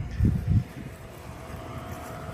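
Wind buffeting the microphone in two low gusts in the first half second, then a steady low rumble with a faint steady hum under it.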